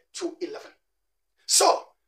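A man's voice speaking in two short phrases with a pause between: preaching, reading scripture aloud.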